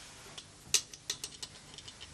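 Small metal hand tools clicking and clinking on a saddler's workbench as they are handled: a string of light, sharp clicks, the loudest about three quarters of a second in.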